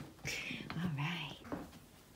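Soft, indistinct whispered speech, with a short voiced sound about a second in.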